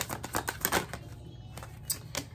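A deck of tarot cards being shuffled by hand: a quick run of papery clicks as the cards slap together, thinning out about a second in, with one last click near the end.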